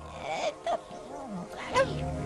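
A man's voice making a few short, cat-like growls and snarls.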